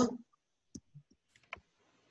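A few faint, separate clicks, spread over about a second, made while figures are handwritten in digital ink on a computer. A man's word trails off at the very start.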